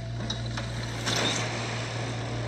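Horror film trailer sound design: a low steady hum under a rushing whoosh that swells about a second in, as the picture cuts to a title card.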